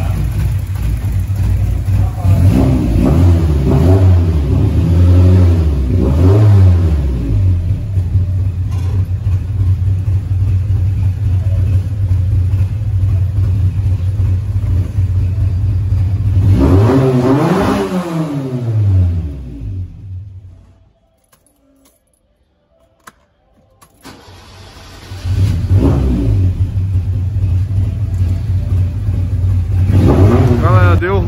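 Fiat Uno 1.6R's naturally aspirated four-cylinder, fitted with a 288 Bravo camshaft and FuelTech FT300 injection, running and being blipped: several revs early on, a steady idle, one more rev a little past halfway, then the engine dies and goes almost silent. After a short click it is started again and revved.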